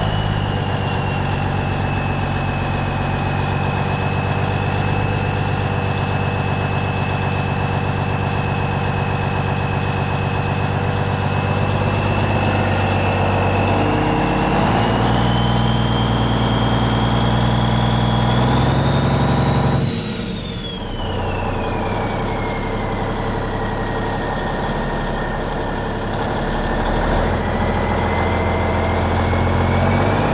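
N14 Cummins diesel in a Peterbilt truck running, with a loud, high turbocharger whistle over the engine note. The whistle climbs in pitch through the middle, then, after a brief drop in level about two-thirds in, glides well down and rises again near the end.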